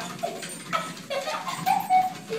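Boston terrier whining in several short calls that bend up and down, the loudest near the end.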